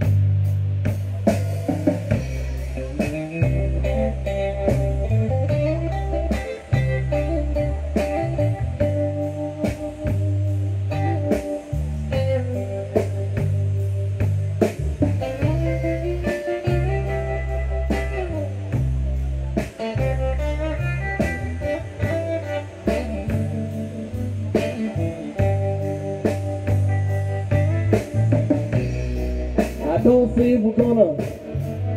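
Live band playing an instrumental passage with no vocals: electric guitar lines over electric bass and a drum kit keeping a steady beat.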